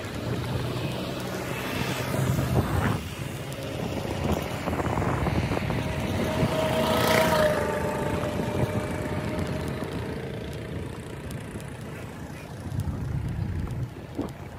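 Road and wind noise from riding along a road in an open vehicle. A louder passing vehicle swells and fades about halfway through.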